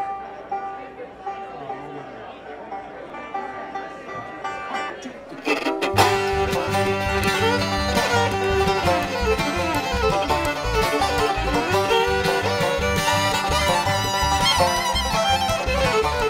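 Live acoustic bluegrass band kicking into an up-tempo song about five seconds in: banjo rolls and fiddle over upright bass and acoustic guitar, with the bass marking an even beat. Before that comes a quieter stretch of voices and soft instrument notes.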